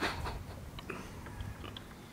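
Faint small clicks and scrapes, scattered a few times a second, of a screwdriver and metal tool working a hardening paste of instant noodles and super glue into a motorcycle's plastic turn-signal mount.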